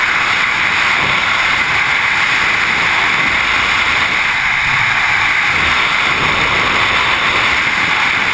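Loud, steady rush of freefall air blasting over the camera's microphone during a tandem skydive.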